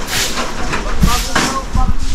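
Outdoor background of faint, broken voices and a couple of sharp knocks over a steady low rumble.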